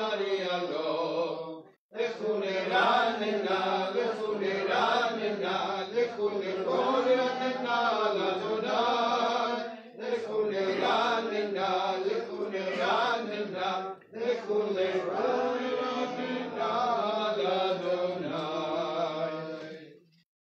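A man's voice chanting a Hebrew Shabbat prayer in long melodic phrases, pausing briefly for breath about 2, 10 and 14 seconds in.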